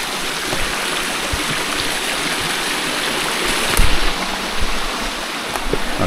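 A small rocky stream splashing over a cascade, a steady rush of running water. A few short knocks sound over it, the loudest about four seconds in.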